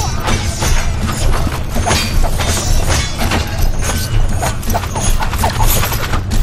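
Film fight-scene sound effects: a rapid, irregular run of hits and clashes, several a second, over a steady low rumble.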